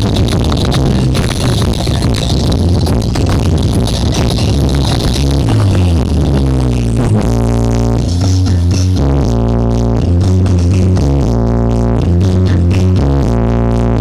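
Electronic dance music played loud through a large outdoor speaker-stack sound system during a sound check, with heavy bass. About halfway through, the busy upper layers drop away and a pitched bass line stepping between notes dominates.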